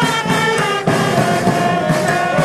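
Police band playing a patriotic tune, held melody notes over a steady drumbeat.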